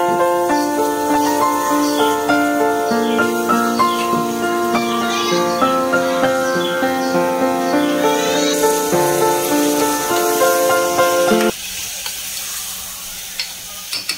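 Instrumental background music with a melody of held notes, which cuts off suddenly about three-quarters of the way through. A steady sizzling hiss of cooking on the stove remains, with a couple of light knocks near the end.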